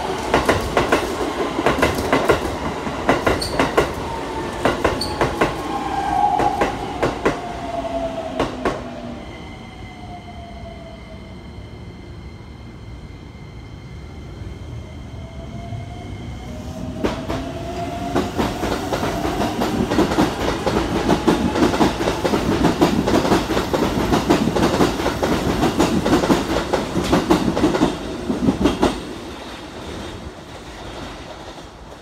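A Keikyu 1000-series electric train runs in past the platform, wheels clacking over rail joints, its motor whine falling in pitch as it slows. After a quieter lull with a steady high-pitched hum, a Keikyu 1500-series train pulls away: its motor whine rises and the wheels clack over joints more and more densely.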